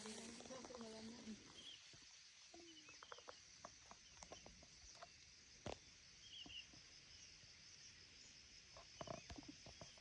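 Near silence: faint outdoor background with a faint voice in the first second or so, then a few soft clicks and small high chirps.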